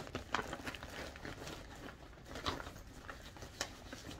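Clear plastic bag of a yarn kit rustling and crinkling as it is handled and packed, with scattered light clicks and rustles.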